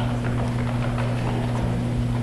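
Steady low electrical hum, two even tones an octave apart, with faint audience murmur and scattered faint clicks above it.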